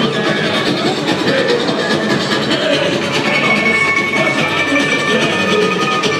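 Samba-school parade music played live: the steady, dense drumming of a samba bateria carrying a samba-enredo, loud and unbroken.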